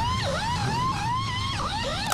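Pneumatic impact gun spinning a race car's lug nuts one after another: a quick run of rising whines, each cut off by a short dip in pitch as the gun moves to the next nut.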